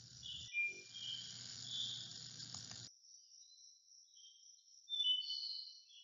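Faint insect chirping, high-pitched and uneven, over a low background hiss that cuts off about three seconds in.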